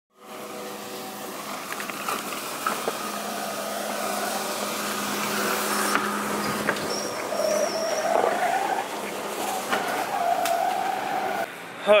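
Tennant T5e walk-behind floor scrubber running, a steady motor and vacuum hum. A wavering tone rises over it in the second half.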